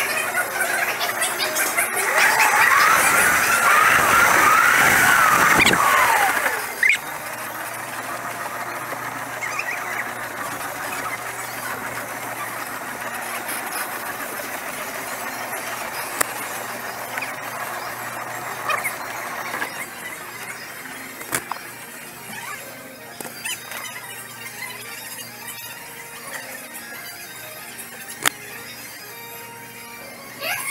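Indoor go-kart tyres squealing on the polished concrete track through a corner, loud with a wavering pitch for a few seconds, over the running of the kart; after that the kart runs on more quietly with only brief squeals.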